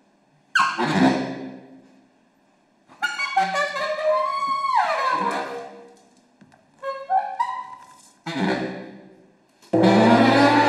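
Baritone saxophone played in short, separate phrases with pauses between: sharp attacks that die away, a longer phrase about three seconds in whose pitch slides down, and a loud held low note starting just before the end.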